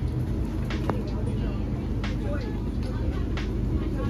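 Outdoor ambience with a steady low rumble, faint voices and a few scattered clicks.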